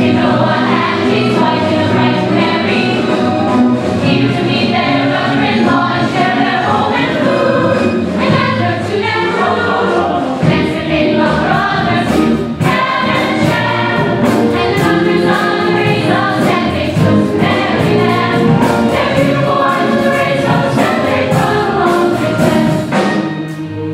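A stage-musical number: the cast sings as a chorus over instrumental accompaniment.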